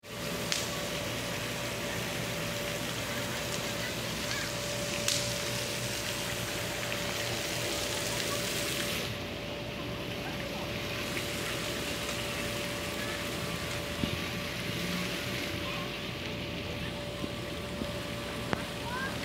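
Steady, even background hiss of an outdoor town square at night, with a faint steady hum running under it and a few soft clicks.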